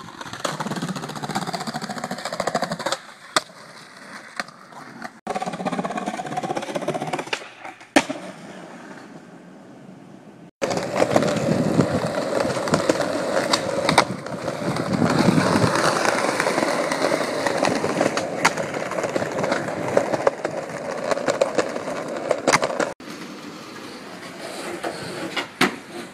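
Skateboard wheels rolling on concrete and asphalt, with sharp clacks as the board strikes the ground on tricks and landings, in several short clips that start and stop abruptly.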